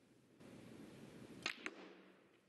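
Snooker cue tip striking the cue ball with a sharp click about one and a half seconds in, followed a fraction of a second later by a second, lighter click, over a faint steady arena hush.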